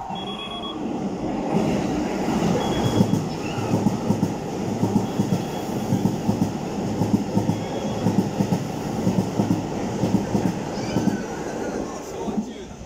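Keikyu New 1000 series electric train running through the station at speed without stopping. Its noise rises from about a second and a half in, then comes a long steady run of wheel beats over the rail joints as the cars go past, fading near the end.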